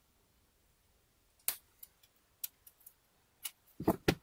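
Small scattered clicks and ticks of a metal SIM ejector pin's hook picking at the rubber seal over the SIM tray of a rugged phone, ending in a fuller knock of the phone being handled.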